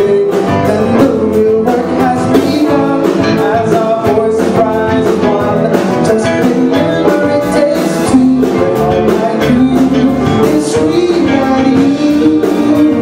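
A man singing live into a handheld microphone with a rock band of piano, guitar, bass and drums behind him.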